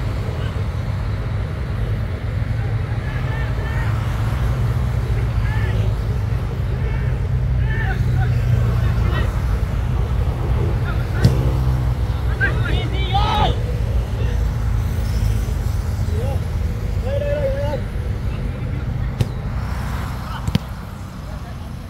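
Outdoor football match sound: scattered shouts and calls from players on the pitch over a steady low rumble, with a single sharp thud about eleven seconds in.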